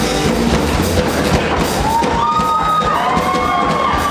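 Swing jazz band playing with double bass and drums to a steady beat, with a few sliding high notes past the halfway point.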